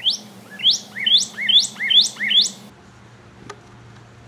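Male northern cardinal singing: a run of about six loud, rising whistled notes, roughly two a second, that cuts off suddenly partway through.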